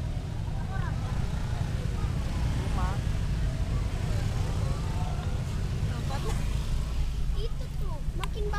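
Steady low rumble of a car moving slowly in congested street traffic, with faint voices of people nearby.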